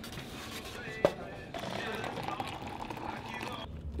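Convenience-store background of indistinct voices and music, with one sharp click about a second in.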